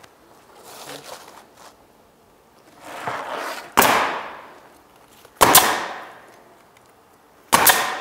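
Pneumatic roofing nailer firing three times, driving nails through an asphalt shingle into the deck. Each shot is a sharp crack with a short fading tail. The shots come about a second and a half to two seconds apart, the first about four seconds in.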